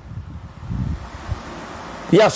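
Wind noise on the microphone: a steady hiss with a low rumble that swells briefly just under a second in.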